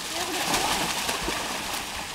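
Water splashing heavily as two tigers rear up and grapple in a pool, loudest about half a second in. A few short, low vocal calls sound early on.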